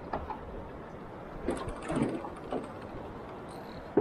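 A spinning reel working under the load of a big snapper on the line, its gears and drag making short mechanical clicking sounds, bunched about halfway through.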